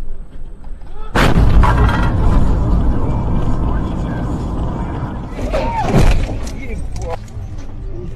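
A car collision: a loud sudden crash about a second in, with glass and debris scattering across the road, followed by several seconds of loud clattering noise with further sharp hits.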